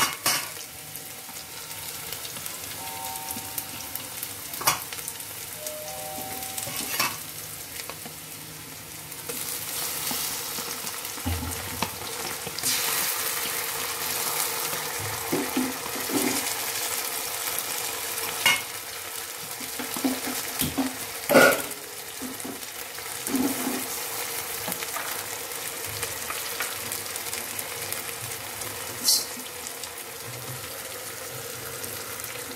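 Sliced onions and garlic paste sizzling in hot oil in an aluminium pressure cooker pan, stirred with a utensil that knocks against the pot now and then. The sizzle grows louder about a third of the way in, and the sharpest knock comes about two-thirds of the way through.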